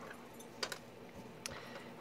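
Faint handling sounds of a scoring stylus and cardstock star being repositioned on a plastic scoring board, with two short clicks about a second apart.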